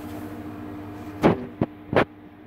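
A steady low hum, with three sharp knocks close together in the second half.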